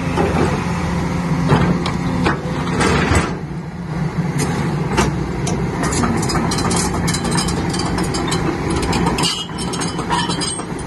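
Crawler excavator's diesel engine running steadily, with many sharp metallic clicks and clanks from the machine working over it, thickest in the second half.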